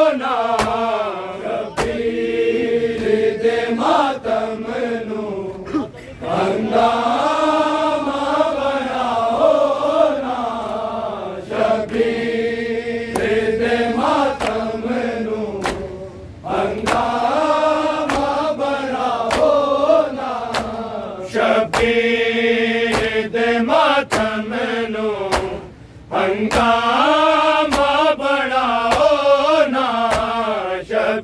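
Men chanting a Shia noha lament in Punjabi in long sung phrases that pause briefly about every ten seconds, over the sharp, repeated slaps of a crowd beating their chests in matam.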